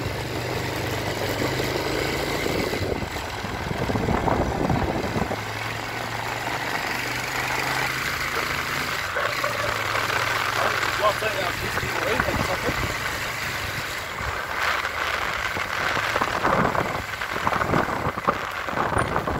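Street sounds: a vehicle engine idling with a steady low hum that comes and goes, with people's voices talking nearby.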